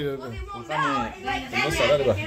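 Chatter of several people talking over one another in a room.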